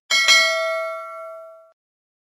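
Notification-bell 'ding' sound effect for the subscribe animation's bell icon. It strikes sharply, with a second strike close behind, then rings with a few clear tones and fades out after about a second and a half.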